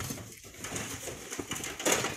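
A long pole scraping and jabbing into a loose sand cliff face, with sand hissing down as it is dislodged. A sharp knock near the end is the loudest sound.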